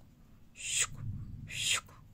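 Two short, forceful breathy hisses from a woman's mouth, about a second apart, each trailing off in falling pitch.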